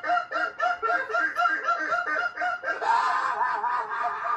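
A man's high-pitched laughter in quick, even pulses, about five a second; near three seconds in it turns into a denser, higher stretch of laughing.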